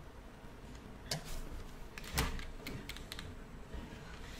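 Clicking at a computer: a few sharp separate clicks over quiet room tone, the loudest about one and two seconds in, followed by a quick run of lighter taps.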